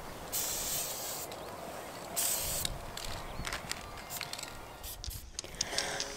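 Aerosol spray paint can hissing in several short bursts of about a second each, with brief pauses between them, then a few light clicks near the end.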